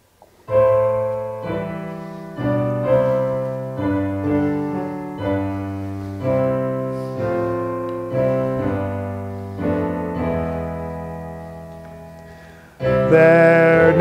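Piano playing a slow hymn introduction, chords struck about once a second, each fading away. Near the end, voices come in singing the hymn's first verse.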